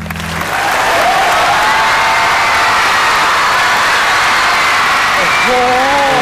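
Large studio audience applauding loudly at the end of a stage performance. The backing music cuts off about half a second in.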